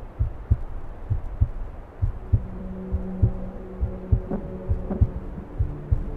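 Film soundtrack of a low, regular heartbeat-like pulse, about two beats a second. A sustained low chord of drone tones comes in about two seconds in and shifts lower near the end.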